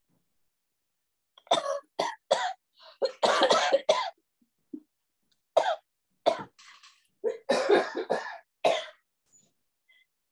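A woman coughing badly into her hand: a bout of several hard coughs from about a second and a half in, a pause, then another run of coughs that ends near the end.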